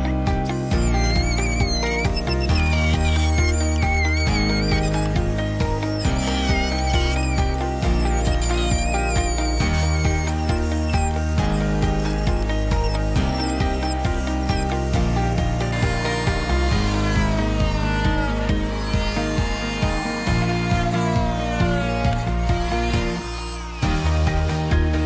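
Background music, with an oscillating multi-tool buzzing under it as its blade cuts through the hard plastic bottom of a trash can.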